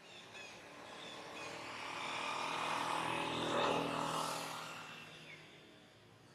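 A motor vehicle passing by out of sight: its engine swells to its loudest about three and a half seconds in, then fades away. A few short bird chirps come near the start.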